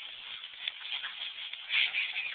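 Scuffling and rustling of bodies and clothing on the floor during a tussle, with a louder burst a little before the end.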